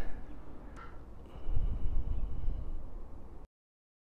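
Low rumbling noise on a handheld microphone, with a faint thin high tone in the middle. It cuts off to dead silence near the end.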